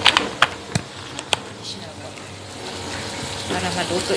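A few sharp clicks and taps in the first second and a half, then a steady low hiss from a chicken, potato and carrot stew simmering in a wok over a gas flame.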